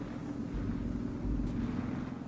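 A car engine running steadily with a low drone and rumble, as a vehicle drives through snow.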